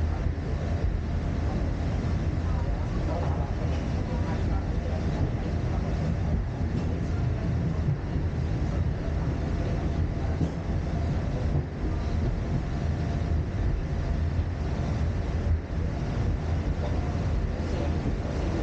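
Steady low rumble of the fifth-generation Peak Tram car running down its cable-hauled funicular track, heard from inside the cabin.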